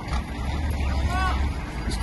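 Engine of a hydraulic log loader running steadily with a low rumble while it lowers a large log onto a truck trailer.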